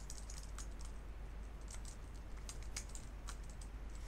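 Computer keyboard typing: a run of irregular, fairly quiet key clicks as the word 'Temperature' is typed, over a steady low hum.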